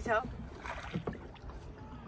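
Wind buffeting the microphone over faint water noise as a small wooden boat moves across a lake, after a short spoken word at the start.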